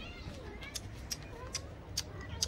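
Kitten mewing: thin, high calls that bend in pitch, with about four short, sharp high ticks in the second half.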